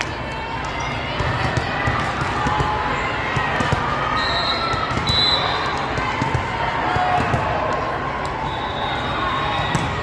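Volleyball being served and played in a reverberant sports hall: sharp hits of hands on the ball scattered through the rally, over a steady babble of players' and spectators' voices.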